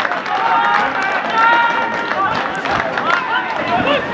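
Several voices calling and shouting at once across an outdoor football pitch, overlapping so that no words stand out, with a few sharp knocks among them.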